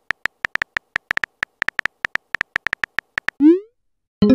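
Texting-app keyboard sound effect: a fast, uneven run of short electronic clicks, about seven a second, as a chat message is typed, ending near the end in a brief rising electronic bloop.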